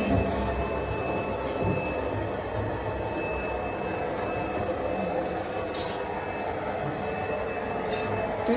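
Steady mechanical hum and rumble, like ventilation or machinery running in a small enclosed compartment, with a thin, constant high whine over it.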